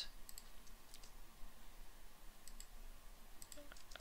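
A few faint, scattered clicks of computer keystrokes and mouse buttons while text is being edited. There are a few in the first second and a small cluster around two and a half to three seconds in.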